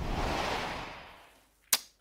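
Programme-sting transition effect: a noisy whoosh that swells and dies away over about a second and a half, then a single sharp click near the end.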